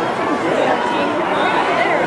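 Spectators' chatter: many voices talking and calling out at once, overlapping, with no single voice standing out.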